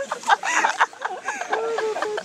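Several people's voices overlapping: laughter and short high calls that rise and fall in pitch.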